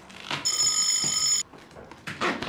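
Adhesive tape being pulled off the roll with a steady high screech lasting about a second, starting sharply after a short rasp and cutting off abruptly.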